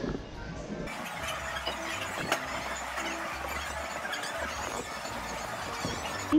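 Casino slot machines chiming and jingling, many electronic tones at different pitches overlapping at once, with one sharp click a little over two seconds in.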